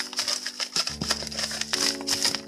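Paper rustling and crinkling as a paper envelope of seed packets is picked up and handled, in quick rustles throughout, over slow background piano music.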